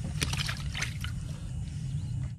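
Freshly caught fish heaped in the wet bottom of a small boat, with a quick cluster of wet slaps and splashes in the first second over a steady low rumble.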